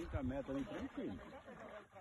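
Quiet, indistinct talking in the background; no other distinct sound stands out.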